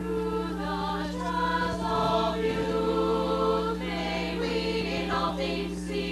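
A choir singing the school's alma mater, several voices together, over a steady low hum.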